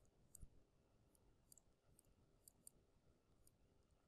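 Near silence with faint, irregular ticks of a stylus tapping on a tablet screen during handwriting.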